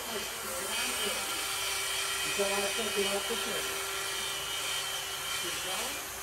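Cordless circular saw running steadily on a guide rail, a constant motor whine over an even rush of noise.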